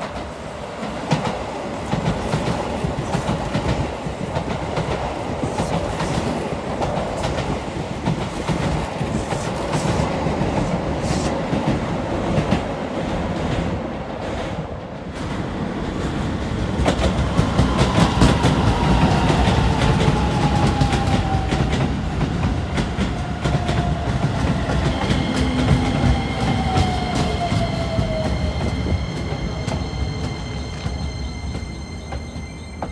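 Electric commuter trains running through a station: steady rail rumble with wheel clatter. In the second half an arriving Keisei 3000-series train's motor whine falls steadily in pitch as it slows into the platform, with several high steady tones joining near the end.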